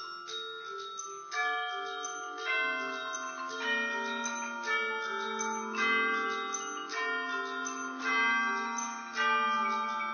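Percussion ensemble playing keyboard mallet instruments (marimbas and bell-like metal instruments), with sustained ringing notes. Strong struck chords ring out about once a second, and the opening second or so has fast repeated mallet strokes.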